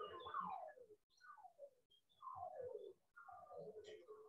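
Faint bird calls in the background: a run of quick falling whistled notes, several a second, with short breaks between the runs.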